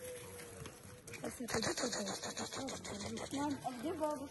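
Crunching and rustling on wood-chip ground starts about a second in, with an indistinct voice near the end.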